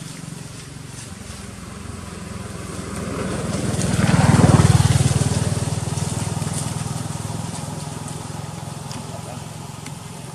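A motor vehicle's engine passing by, growing louder to a peak about four to five seconds in and then fading away.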